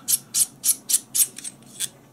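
The metal screw-on cap of a Boya BY-M1 lavalier microphone's battery compartment being unscrewed by hand. The threads rasp in short scrapes, about four a second, and stop shortly before the end.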